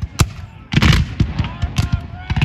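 Ragged volley of black-powder rifle-muskets firing blank charges along a battle line: a single sharp crack, then a burst of several shots close together about three quarters of a second in, and scattered shots after.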